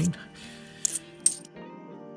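Two sharp clinks of 50p coins knocking together as a stack is thumbed through by hand, about half a second apart, the second louder. Steady background music plays underneath.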